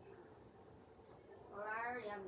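A cat meowing once, a short rising call near the end.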